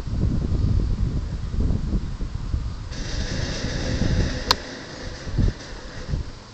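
Wind buffeting the microphone, then a single sharp click of a golf club striking the ball about four and a half seconds in.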